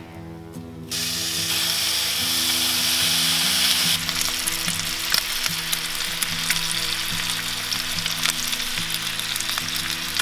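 Bacon strips frying on a hot cast-iron Weber Gourmet BBQ System griddle. The sizzle comes in sharply about a second in, is loudest for the next few seconds, then settles into a steady sizzle with many small pops of spitting fat.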